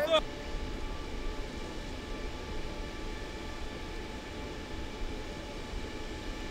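A brief rising call from a voice at the very start, then a steady low rumble of stadium background noise with a faint hum and no distinct events.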